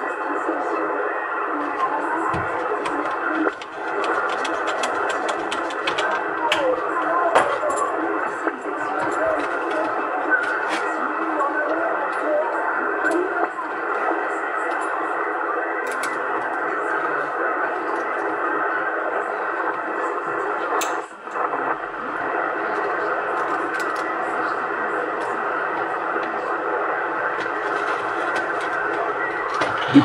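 CB radio receiver audio on 27.625 MHz: a steady, narrow-band hiss of static with faint voices of weak, distant stations buried in it, and scattered crackling clicks. The signal is very weak ("très QRP").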